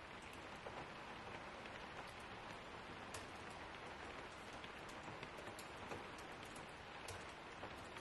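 Typing on a MacBook Pro laptop keyboard: soft, irregular key clicks, several a second, over a faint steady hiss.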